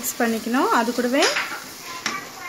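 Wooden spatula stirring a sizzling masala in an aluminium pressure cooker, with a sharp knock against the pot a little over a second in. Wavering, gliding pitched sounds ride over the stirring through the first second and a half.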